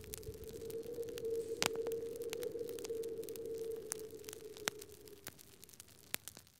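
Logo-intro sound effect: a steady held tone with scattered clicks and crackles over it, fading out about five seconds in.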